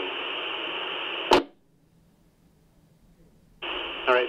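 FM two-way radio receiver audio: a steady hiss of an open carrier after the transmitting handheld's voice stops, cut off about a second in by a short, loud squelch-tail burst as the carrier drops. Then near silence with the squelch closed, until the hiss opens again near the end as the next transmission keys up.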